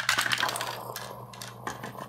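Small hard objects clicking and rattling on a tabletop as a child fiddles with them: a dense run of clicks in the first half second, then scattered single clicks.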